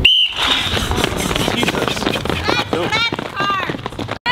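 A short high-pitched start signal sends sprinters out of their blocks. Their feet then scuff along the track, and from about two and a half seconds in people shout with calls that rise and fall in pitch.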